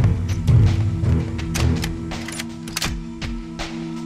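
Background film music: a steady low drone with irregular sharp percussive hits. It opens with a heavy thump and a low rumble in the first couple of seconds.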